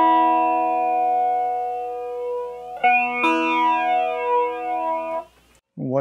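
Electric guitar chord ringing through a Strich Twister analog flanger pedal into a small Orange practice amp, the flanger's sweep moving through its tone. The chord is struck again twice in quick succession about three seconds in and stops shortly before the end.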